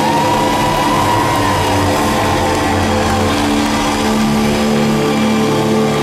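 Live rock band playing loudly through a concert PA, electric guitar over sustained chords, with a high held note that bends up at the start and slowly sinks over the next couple of seconds.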